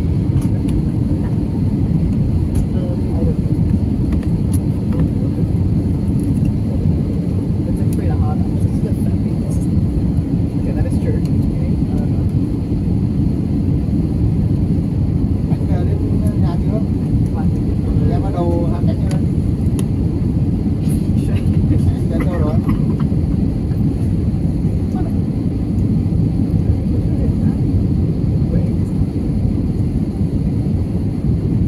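Steady cabin noise of an airliner in flight: a low, even roar of jet engines and airflow. Faint voices come through now and then around the middle.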